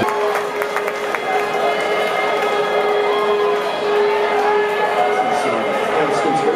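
Live punk band with one sustained electric guitar note held steady, over crowd voices and cheering from the audience.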